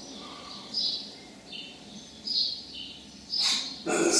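A small bird chirping repeatedly, short high chirps about once a second, with a brief rustling noise near the end.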